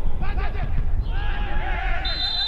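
Men's voices shouting and crying out in a string of short, wavering yells as footballers collide and go down, over a low rumble of wind on the microphone.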